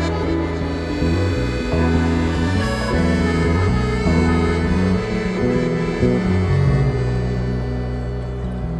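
Instrumental music: sustained accordion chords over a bass line that moves from note to note, with no singing.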